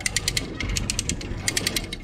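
Hand-cranked ratchet winch (come-along) clicking rapidly as its pawl snaps over the gear teeth while it winds in cable under load, in two quick runs with a brief pause about halfway through.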